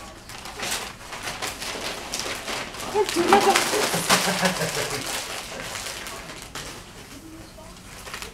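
Gift-wrapping paper and tissue paper rustling and crinkling as gifts are wrapped by hand, with quick crackles throughout. A brief low, cooing voice sound comes in about three seconds in.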